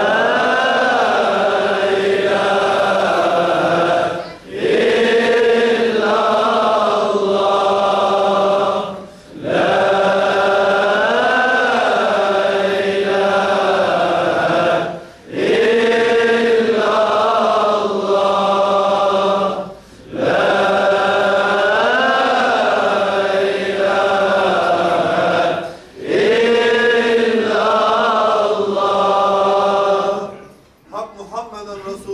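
Sufi dhikr chanted in unison: one short melodic phrase, rising and then falling in pitch, repeated six times at about five-second intervals with a brief breath between each.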